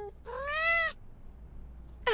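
A cartoon cat's single meow, under a second long, rising in pitch and then easing slightly down.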